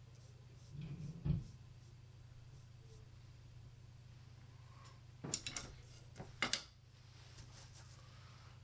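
Quiet room with a steady low hum, a soft knock about a second in and a few small clicks later on, from a brush and tools being handled at the painting table.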